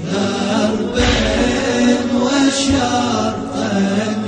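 A latmiya, a Shia mourning chant in Arabic: a man's voice chanting a melodic line over a slow, low beat.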